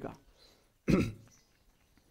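A man clears his throat once, briefly, about a second in, after the end of a spoken word.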